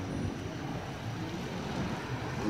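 Street ambience with a minivan's engine running as it drives slowly along a dirt road, a steady low rumble.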